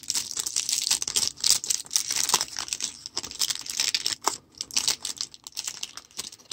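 Clear plastic wrapper of a pack of baseball cards crinkling and tearing as it is peeled open by hand: a fast, irregular run of crackles.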